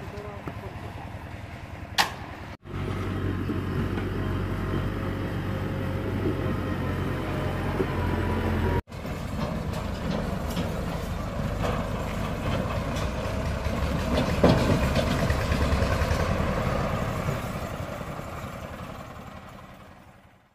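Tractor engine running steadily, the sound breaking off abruptly twice and fading out near the end. Before it, a single sharp knock about two seconds in.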